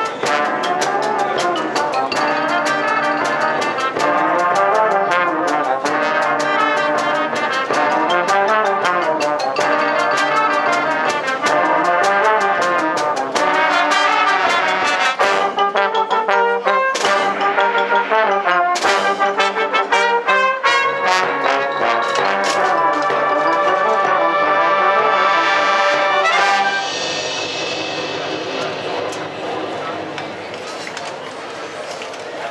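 Brass marching band of trombones, trumpets, euphoniums and tubas playing a piece together with rising and falling runs, sharp accented hits from about halfway, and a softer passage near the end.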